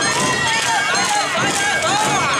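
Many voices shouting calls over Awa Odori festival music of shamisen and drums, with a steady held tone running through it.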